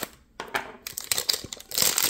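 A few small clicks, then the crinkling of a Pokémon booster pack's foil wrapper as it is handled, loudest near the end.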